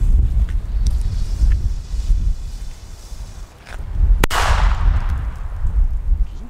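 Roter Korsar firecracker, a small 1.5 g banger, going off with one sharp bang about four seconds in. Its report dies away over about a second.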